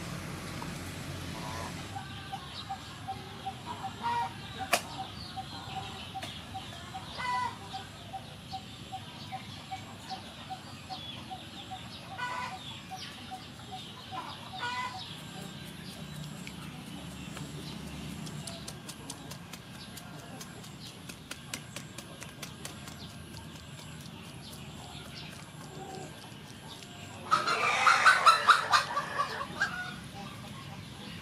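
Birds calling in the background: several short calls, then one loud, rapidly pulsing call near the end.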